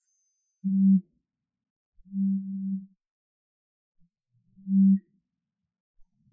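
Mobile phone vibrating with an incoming call: three low buzzes, the second one longer.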